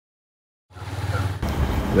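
Low steady rumble of outdoor background noise, starting under a second in and growing louder about halfway through.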